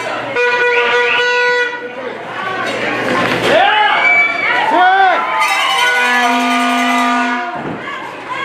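A horn blowing two long held notes amid crowd shouting and chatter: one about half a second in, and a lower one lasting about a second and a half near the end.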